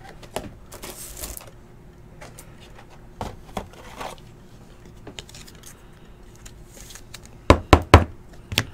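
A trading card in a rigid plastic holder being handled, with faint rubbing and light taps. Near the end come about four sharp plastic clicks within half a second, as the hard holder knocks against something.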